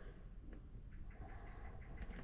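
Quiet pause with a faint low rumble and a faint, short high bird chirp near the end.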